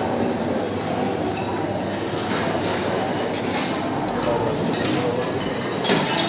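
Buffet dining room ambience: a steady din of voices and kitchen noise, with a few light clinks of dishes and cutlery.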